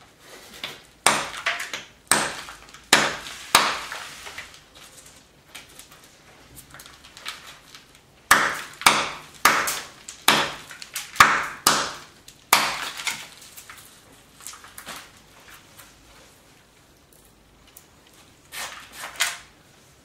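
Hammerstone striking a small flint core held on a stone anvil in bipolar knapping: sharp stone-on-stone knocks, four about a second apart, then after a pause a run of about eight, and two more near the end.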